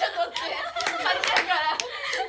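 A group of young women laughing and clapping their hands, with several sharp claps scattered among excited voices and laughter.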